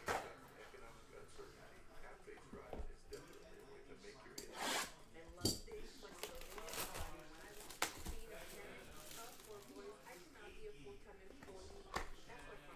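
Light handling noises on a desk: scattered clicks and knocks, with a brief rustle about four to five seconds in.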